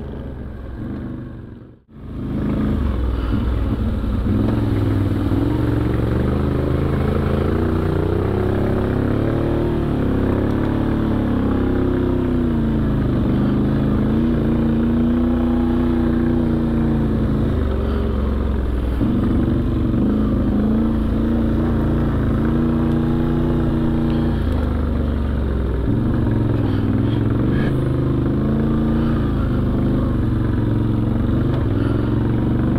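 Off-road vehicle's engine running under load, heard on board while riding a rough dirt trail. The engine speed repeatedly holds, then rises and falls, with occasional knocks and clatter from bumps. The engine sound starts about two seconds in, after a brief quiet gap.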